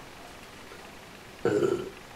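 Quiet room tone through a pause, then near the end a short, low voiced sound from the man, a hesitation "oh" before he goes on talking.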